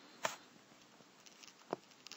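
Two faint, brief clicks about a second and a half apart, over quiet room tone.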